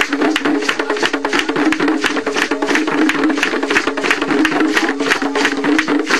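A skin-headed hand drum struck with bare hands in a quick, steady rhythm, several strokes a second.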